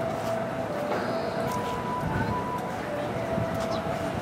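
EF64 electric locomotive hauling a freight train of container wagons past, with a steady low rumble of wheels on rail. Thin, steady high-pitched whining tones come and go over the rumble.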